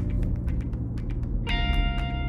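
Background music: held notes ringing out, with a new chord struck about one and a half seconds in, over a steady low rumble.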